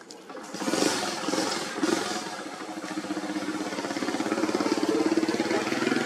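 A small engine running as it passes, growing louder to about five seconds in and then fading.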